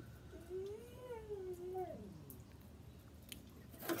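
A pet's whine: one drawn-out call of about two seconds that rises, then falls and trails off lower.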